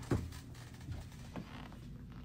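Quiet room tone with a low hum and three faint clicks: one at the start, one about a second in, and one shortly after.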